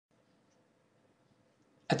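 Near silence, faint recording hiss only, until a man's voice starts speaking right at the end.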